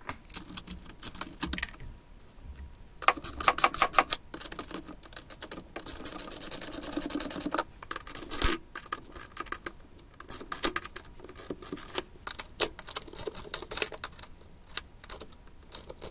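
Ratcheting wrench clicking rapidly as the sump pump lid's bolts are tightened down, in runs of fast clicks with short pauses between, and one sharper knock about halfway through.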